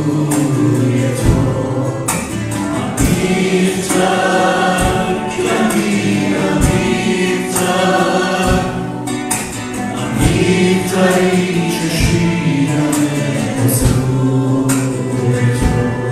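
Live Christian worship song: two men and a woman singing together to acoustic guitar, with low thumps on the beat.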